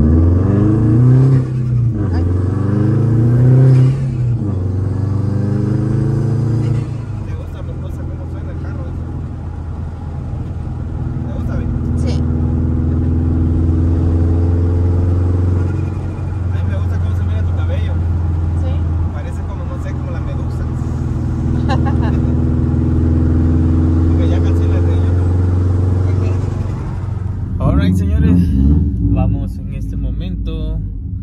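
Subaru WRX's turbocharged flat-four engine heard from inside the cabin while driving: its pitch climbs through the gears over the first several seconds, then it settles into a steady cruise with a couple of gentle rises in pitch as the car picks up speed again. The sound changes abruptly near the end.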